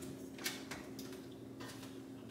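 Wall oven door being pulled open and a metal cake pan set onto the oven rack: a few faint clicks and knocks, the clearest about half a second in, over a faint steady hum.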